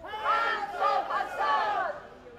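A crowd shouting, several raised voices yelling over one another in high-pitched, drawn-out shouts.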